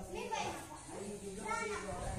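Children's voices talking and calling out during play, in two short bursts of speech, one at the start and one about a second and a half in.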